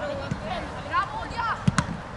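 Players calling out in short shouts across a football pitch, with two sharp football-kick impacts in quick succession near the end.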